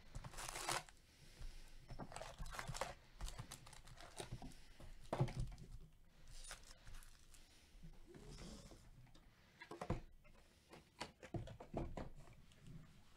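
Foil-wrapped 2015 Bowman Baseball card packs crinkling and rustling as they are pulled from the box, shuffled by hand and stacked. The rustles come in short spells with quieter pauses between them.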